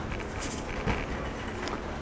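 Steady background noise of a large store's interior, with a faint hum and one soft knock a little before a second in.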